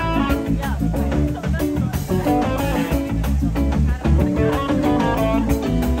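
Live band playing an instrumental passage: electric guitar lines over bass guitar and drums, steady and loud.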